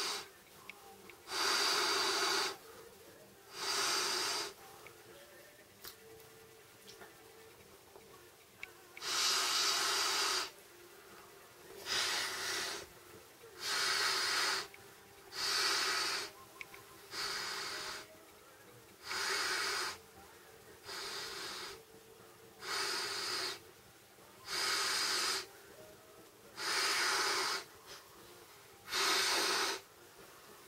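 Breaths blown by mouth into the valve of an Intex air bed to inflate it, roughly one every two seconds, with a pause of about four seconds early on.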